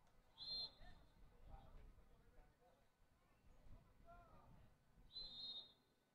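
A referee's pea whistle, blown twice in short, flat, trilling blasts, one near the start and one about five seconds later. Between the blasts there are faint distant voices from the pitch.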